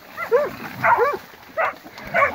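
Hunting dogs barking in short, separate barks, about five in two seconds, as they hold a caught wild boar.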